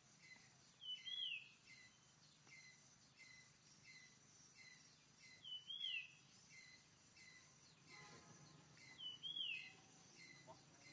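Forest ambience of birdsong: a bird repeats a short rising-then-falling call about every four seconds, over a steady series of short high chirps about twice a second.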